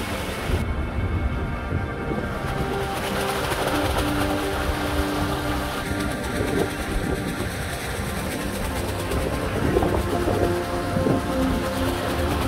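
Jacuzzi waterfall spilling into the tub with the jets bubbling, a steady rushing wash of water, with faint music in the background.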